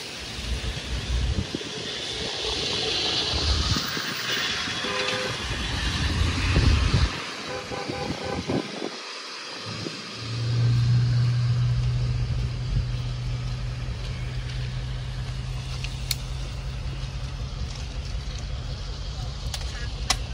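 An approaching diesel train: for the first half, wind buffets the microphone and faint horn tones sound in the distance; then, about ten seconds in, a steady low locomotive engine drone sets in and holds.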